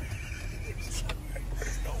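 Minivan cabin noise at crawling speed: the engine and tyres make a low steady rumble, with a faint thin high tone over the first second or so.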